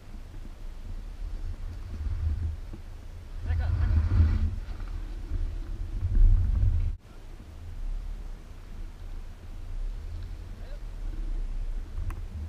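Low, uneven rumble of wind buffeting a car-mounted action camera's microphone, with faint voices around four seconds in. The rumble drops off abruptly about seven seconds in, then goes on more weakly.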